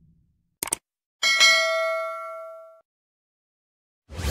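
Subscribe-animation sound effects: a short mouse click, then about half a second later a bell-like notification ding that rings for about a second and a half and fades away.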